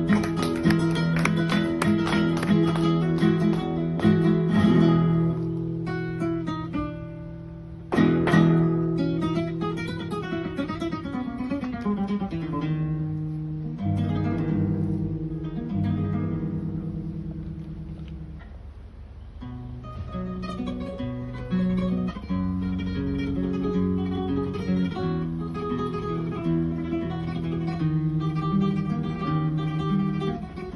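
Solo flamenco guitar playing a rondeña: loud ringing chords at the start and again about eight seconds in, then softer single-note melodic passages that fade to their quietest just past the middle before the playing builds again.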